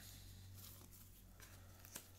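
Near silence: a faint rustle of a tarot card being laid crosswise on a paper spread mat, over a low steady hum of room tone.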